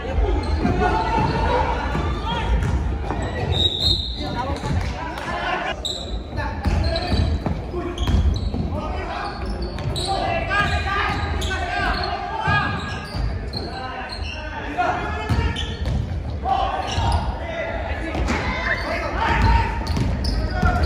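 Indoor basketball game in an echoing gym hall: a ball bouncing on the hardwood floor, players' shoes scuffing, and indistinct shouts and chatter from players and onlookers. There is a short high squeak about four seconds in.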